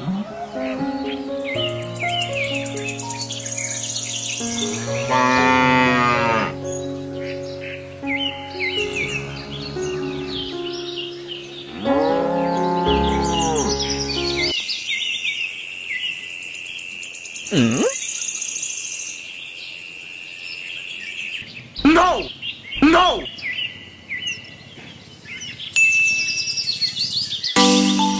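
Farm sound effects over light background music: birds chirping and a cow mooing twice. About halfway the music stops, leaving the bird chirps and whistles on their own, and the music comes back just before the end.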